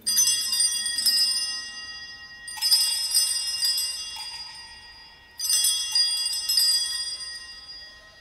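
Sanctus (altar) bells rung three times at the elevation of the chalice, marking the consecration. Each peal of several small bells rings out suddenly and dies away over a couple of seconds before the next.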